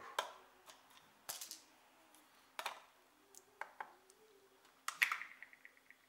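Faint, scattered clicks and light knocks of a plastic cup being set on a small digital kitchen scale and the scale being handled. The sharpest knock comes about five seconds in and is followed by a brief light rattle.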